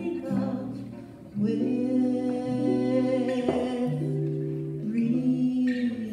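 Live acoustic duo performing a song: singing in long held notes over acoustic guitar. The music thins out briefly about a second in, then voice and guitar come back in full.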